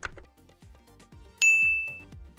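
A few keystrokes on a laptop keyboard, then about one and a half seconds in a single loud, bright chat-message ding that rings on and slowly fades.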